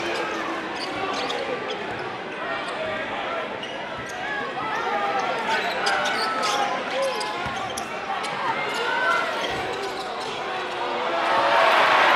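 A basketball dribbled on a hardwood gym floor over a crowd's chatter and shouts, with short sharp ticks of bounces and sneaker squeaks. The crowd noise swells louder near the end.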